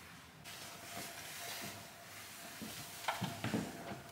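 Camera handling noise: a rustling hiss as the camera is picked up and carried, over a faint steady hum, with a few brief scrapes near the end.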